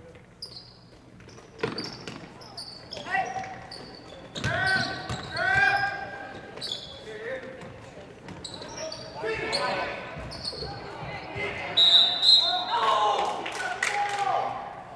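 Basketball game sound in a large gym: players and spectators shouting and calling out, with a basketball bouncing on the hardwood floor and short high squeaks. The loudest calls come about halfway through and again near the end.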